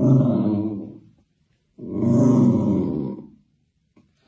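Domestic cat growling low twice, each growl lasting about a second and a half, while guarding its ball.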